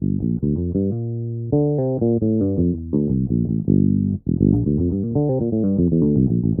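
Electric bass guitar playing a run of single plucked notes, about three a second, with one longer held note about a second in. The notes spell a G minor 7 arpeggio over two octaves and run back down the scale.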